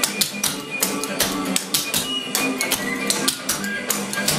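Clogging shoe taps clicking on a wooden dance floor in quick runs of sharp strikes as the dancer does rock steps, with rock and roll music playing underneath.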